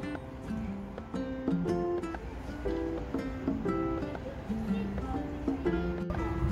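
Background music: a light tune played as a series of separate pitched notes.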